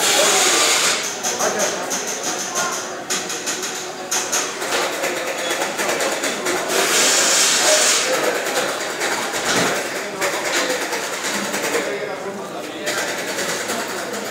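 Busy pinball assembly floor: background chatter of workers over continual clicking and clattering of parts and hand tools at the playfield stations, with a loud burst of hissing at the start and another about seven seconds in.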